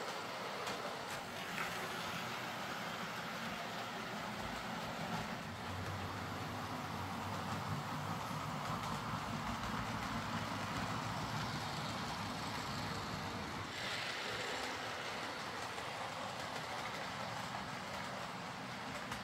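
OO gauge model diesel multiple units running on DC track, their small electric motors whirring steadily, with faint clicks from wheels crossing rail joints and points.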